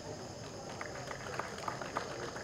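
A pause in a speech at a microphone, leaving the faint background of an outdoor gathering: a low murmur with a few light clicks in the second second.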